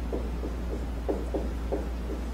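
Felt-tip marker writing on a whiteboard: a run of short, irregular strokes, over a steady low hum.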